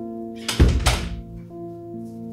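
Background music with held notes, and a loud thump about half a second in, followed by a second knock just after.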